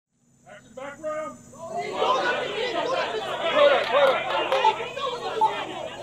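A crowd of people talking over one another: a few voices at first, thickening into a dense hubbub of many voices from about two seconds in.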